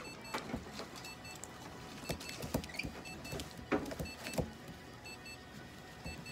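Irregular clicks and scuffs from a syringe feeder at a prairie dog's mouth as it is held and hand-fed. A faint repeating pattern of short high electronic beeps runs in the background.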